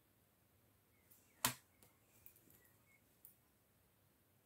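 Coloured pencils being handled on a desk: one sharp click about one and a half seconds in as a pencil is picked up, then a few light taps and clicks.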